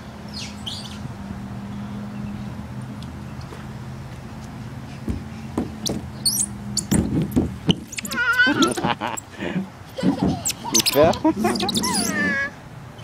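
A steady low hum, then from about seven seconds in a toddler's high-pitched, wordless vocal sounds and squeals, with a few short knocks.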